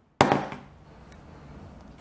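A heavy ball strikes a wood-fibre laminate floor sample with a protective top layer: one sharp knock a fraction of a second in, dying away within about half a second. The board takes the blow with barely a mark.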